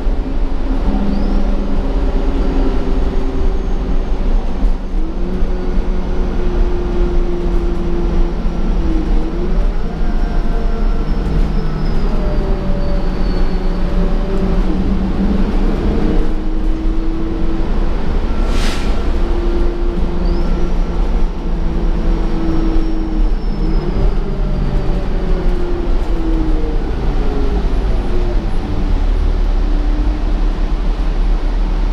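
Engine and drivetrain of a 2015 Gillig Advantage transit bus, heard from inside the cabin while it drives: a steady rumble with whines that rise and fall in pitch as it speeds up and slows down. A short hiss comes about two-thirds of the way through.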